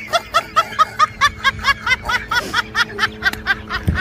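Rapid, high-pitched snickering laughter, an even run of short 'heh' syllables at about six a second, over faint steady background music.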